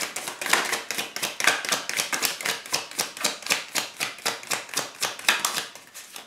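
Deck of tarot cards shuffled overhand by hand: a quick, even run of light card clicks, several a second.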